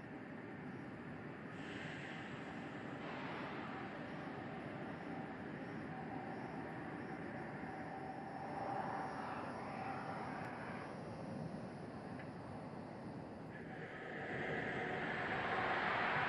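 Steady rushing, rumbling outdoor noise, swelling louder over the last couple of seconds.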